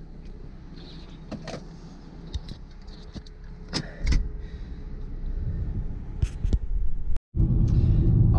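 Infiniti sedan heard from inside the cabin: the engine idles steadily with a few small clicks and knocks, then grows louder from about halfway as the car is put in gear and pulls away. After a short gap near the end, the car is driving with much louder engine and road noise.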